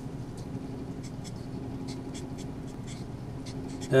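Marker pen writing on a white sheet: a run of short, faint strokes as an equation is written out by hand, over a steady low hum.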